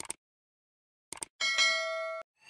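Sound effects of a subscribe-button animation: mouse clicks, then about a second and a half in a notification bell ding that rings on with steady tones.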